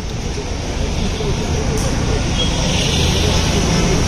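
Street ambience: a continuous traffic rumble with indistinct voices in the background, growing a little louder about a second in.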